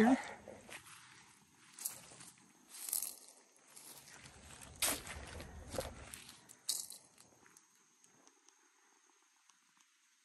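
A handful of footsteps on dry leaves and mulch, spaced about a second apart, fading to near silence for the last couple of seconds.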